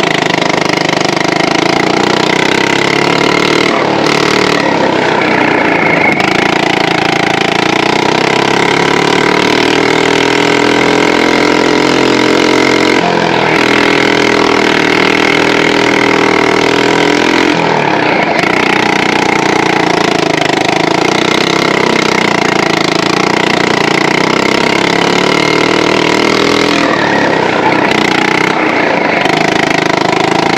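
Go-kart's small gasoline engine running hard under throttle, heard from the driver's seat, its pitch rising and falling as it accelerates down the straights and eases off for corners, with a few brief dips where the throttle is lifted.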